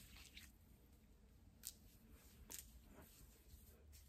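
Near silence, with a few faint soft squishes of leave-in conditioner cream being rubbed between the hands and worked into short hair, two of them clearer, a little before and a little after the middle.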